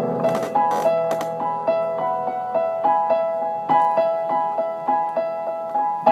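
Solo piano played by hand: an even stream of single notes, about three a second, tracing a melody in the middle range. A few short hissy noises come in the first second.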